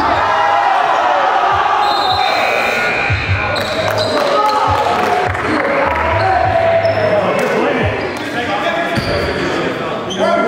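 Live sound of an indoor basketball game: several players' voices calling and shouting across the gym, with a basketball bouncing on the hardwood court.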